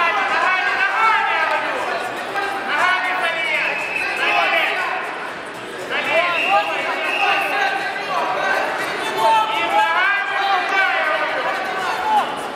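Raised voices of several people calling out and talking over one another in a large sports hall, with a break around the middle.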